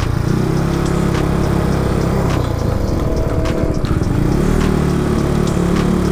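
Yamaha Mio Sporty scooter's small single-cylinder engine running steadily while the bike is ridden slowly, with wind and road noise over it.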